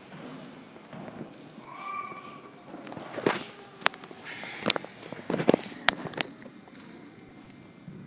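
Sharp clinks and knocks of altar vessels being handled at the altar, a cluster of them between about three and six seconds in.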